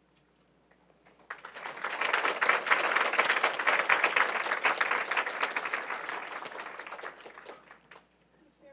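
Audience applauding. It starts a little over a second in, swells quickly, and dies away near the end.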